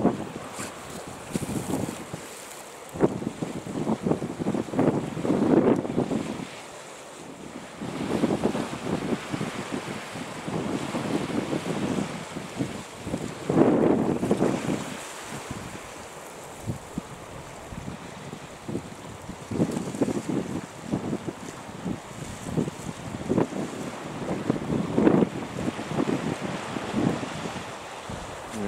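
Wind gusting on the microphone in irregular swells, over the wash of sea waves breaking on rocks.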